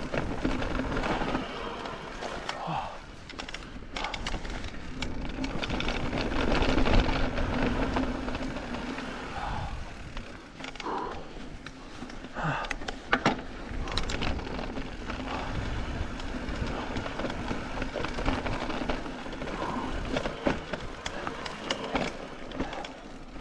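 Mountain bike rolling along a dirt singletrack: steady tyre noise on the trail, with the bike rattling and knocking over bumps and a few sharper knocks around the middle.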